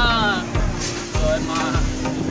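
A man's voice gliding through a drawn-out note, over background music with held tones. Low thuds hit the microphone about once a second.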